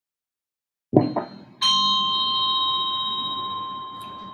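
A couple of short knocks, then a small bell struck once about a second and a half in, ringing with a clear, steady tone that slowly fades.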